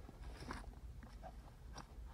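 Gloved fingers scraping and crunching through loose, gravelly soil around a buried bottle. It is faint, with a couple of short, sharper clicks about half a second in and near the end.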